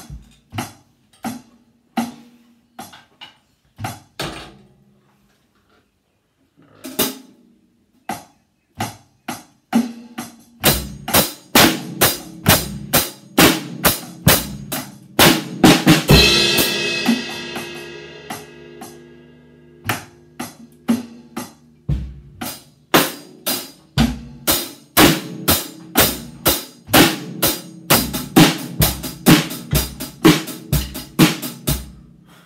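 Acoustic drum kit played: scattered snare and bass drum strokes with a short pause, then a steady beat from about a third of the way in. Midway a cymbal crash rings out and fades for several seconds, and the beat starts up again after it.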